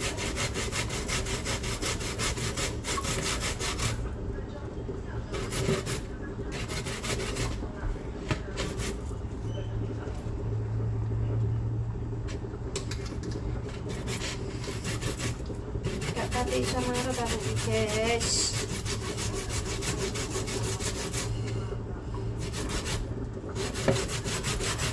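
Long stainless-steel rasp grater scraping a pale peeled root into a bowl, in quick, repeated strokes that keep up steadily.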